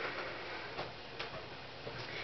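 A folded sheet of paper being handled, giving a few faint, irregular ticks and crinkles over low room noise.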